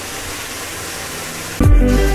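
A steady hiss of background noise, then background music with a strong beat cuts in suddenly near the end, much louder.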